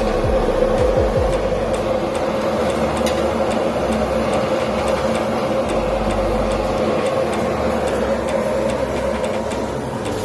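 Steady drone of kitchen machinery: a constant hum with a rushing noise over it.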